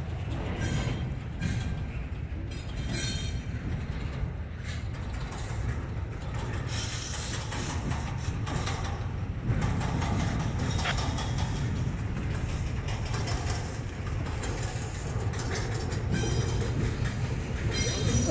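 Freight flatcars rolling past close by: a steady low rumble of steel wheels on rail, with irregular clacks throughout.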